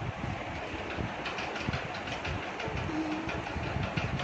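Steady road and engine noise inside a moving car's cabin, with small irregular rattles and knocks over a low rumble.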